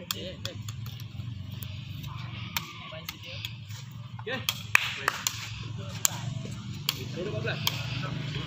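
Scattered sharp taps and clicks, a dozen or so at irregular intervals, over a low steady hum.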